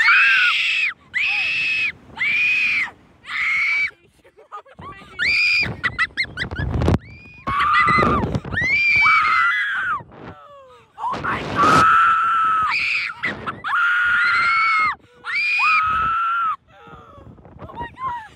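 Two girls screaming over and over as the Slingshot reverse-bungee ride launches them and swings them through the air: four short screams in quick succession at the launch, then longer drawn-out screams. Gusts of wind rush over the microphone between screams.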